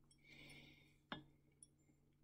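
Faint swish of liquid being swirled in a glass Erlenmeyer flask during a dropwise titration, with one light glass clink a little after a second in.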